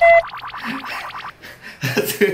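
Comedy sound effect: a short tone that drops in pitch, then a rapid springy flutter of about fifteen pulses a second that fades away after about a second. A brief loud burst follows near the end.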